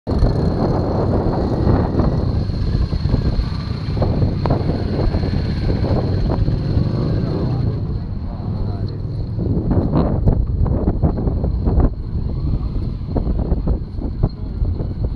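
Wind rumbling on the microphone, with indistinct voices and motorcycle engines running in the background.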